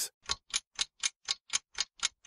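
Clock-tick sound effect of a quiz countdown timer: short, evenly spaced ticks at about four a second.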